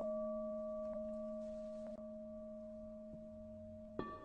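A struck bowl bell ringing out: one low hum with several higher overtones, fading steadily, as used to punctuate Buddhist mantra chanting.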